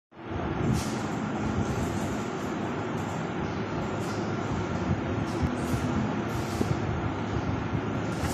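Steady background noise, an even rush with no clear rhythm or tone, running at a moderate level throughout.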